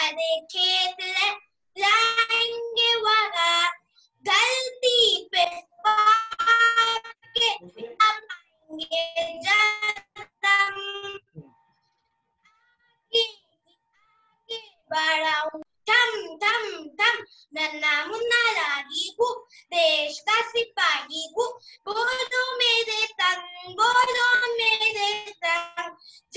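A child singing a Hindi patriotic song over a video call, phrase after phrase, with a pause of about three seconds midway before the singing resumes.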